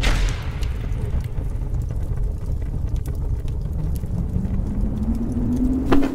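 Cinematic logo-intro sound design: a deep, steady rumble with faint crackles, and a low tone that rises slightly and swells near the end, closing on a short hit.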